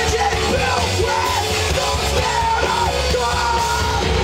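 Live punk rock band playing loud: distorted electric guitars, bass and drums, with a male singer yelling the vocal line.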